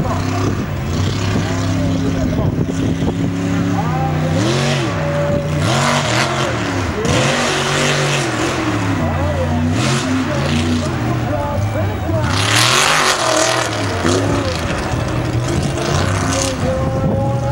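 Mega mud truck engine revving hard up and down over and over as it runs the dirt course, with several loud hissing rushes, the longest near the end.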